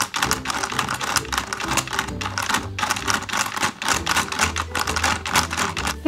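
Rapid, steady plastic clicking, several clicks a second, from the toy kitchen's pie-making mechanism being worked by hand, over background music.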